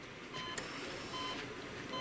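Hospital monitor beeping steadily in the background: short, regular electronic beeps, a little faster than one a second, over faint room hiss.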